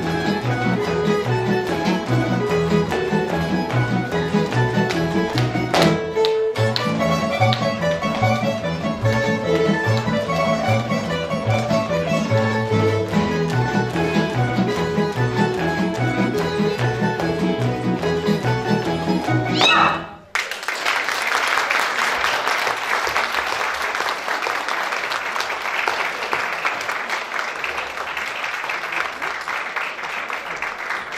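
Folk string band of tamburicas with a double bass playing a dance tune over a steady, pulsing bass line. The music stops suddenly about two-thirds of the way through, and the audience applauds.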